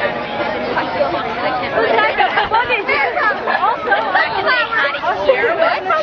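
A group of people chattering, several voices overlapping so no single speaker stands out.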